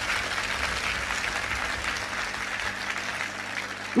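Audience applauding, a dense patter of many hands that slowly dies down.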